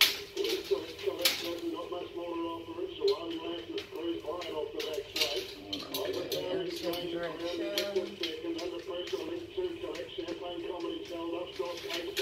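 An indistinct voice from a background radio runs through, with a scattering of sharp clicks and clinks from hand tools and parts on a steel-mesh trailer frame.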